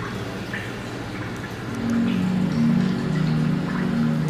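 Water dripping into an aquarium tank over a low steady hum; about halfway through, soft background music of long, low held notes comes in and becomes the loudest sound.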